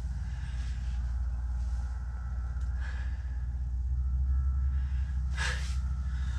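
A man breathing hard and catching his breath after the rush of landing a big fish, with a sharp exhale near the end, over a steady low hum.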